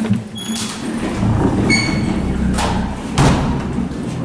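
A door being opened and closed, with thuds and knocks from carried gear. There are two short high squeaks early on and two sharp bangs in the second half.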